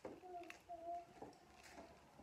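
Near silence, with a few faint footsteps on a concrete floor and a faint, held, distant voice-like call about half a second in.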